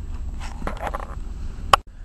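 Low steady hum with faint handling noise. There is a single sharp click shortly before the end, then a brief dropout.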